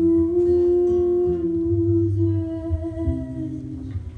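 A young female singer holds one long hummed note into a microphone over quiet acoustic guitar; the note fades out near the end.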